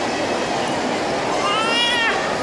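Steady murmur of a large hall, and about one and a half seconds in a short, high-pitched call that rises in pitch and breaks off near the end.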